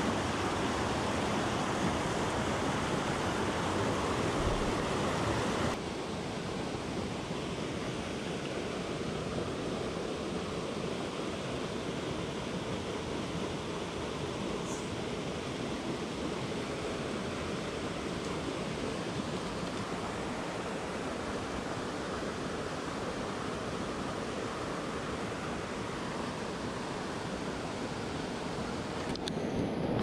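Small mountain stream rushing over rocks and little cascades, a steady rush of water. It drops suddenly to a somewhat quieter rush about six seconds in.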